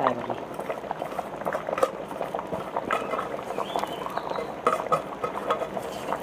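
Pot of curry broth at a rolling boil, bubbling steadily with many small pops.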